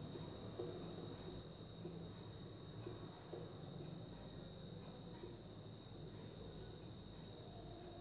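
Faint strokes of a marker writing on a whiteboard, over a steady high-pitched tone that runs throughout.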